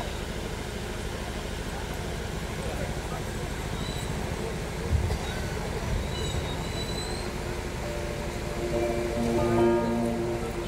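Lull in a live stage programme heard through the PA: a steady low hum and faint murmur, a single thump about five seconds in, and a few held pitched notes near the end.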